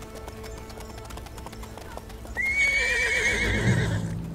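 A horse whinnies loudly about two seconds in, one long quavering neigh that wavers and falls away, with hooves thudding on the ground near the end. Background music plays throughout.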